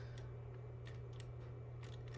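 A few faint, short clicks as a small screwdriver turns the zoom adjustment screw of an Avalonix HD98550 varifocal bullet camera's lens, over a steady low hum.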